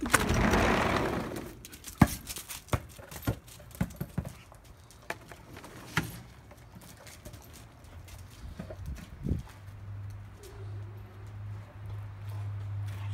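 A dog nosing and pawing a basketball around a brick patio: scattered irregular knocks and scuffs of the ball and her claws on the bricks. A rushing noise of handling in the first second or so, and a low steady drone in the last couple of seconds.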